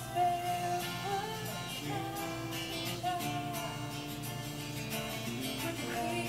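A woman singing into a microphone in long held notes over instrumental accompaniment.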